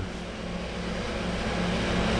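A steady low mechanical hum with a rushing noise that grows gradually louder.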